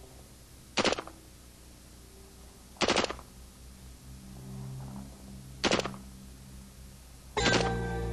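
C7 rifle (5.56 mm NATO) firing short bursts on automatic: four loud bursts of a few rounds each, about two to three seconds apart. Music comes in with the last burst near the end.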